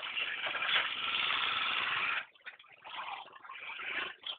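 Motorcycle passing close by, loud for about two seconds and then gone.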